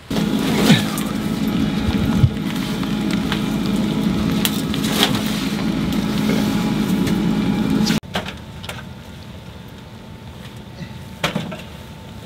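A steady machine hum with a hiss over it, cutting off abruptly about eight seconds in. After that the sound is quieter, with a couple of short wooden knocks near the end as split logs go into an outdoor wood boiler's firebox.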